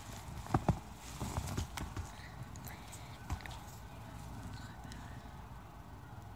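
Knocks and taps of a phone being handled close to its microphone, several in the first two seconds, then only a faint low hum.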